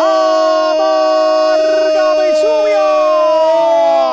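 A football radio commentator's long, drawn-out goal shout ('¡Gooool!'): one unbroken call held at full voice on nearly one high pitch, rising slightly near the end.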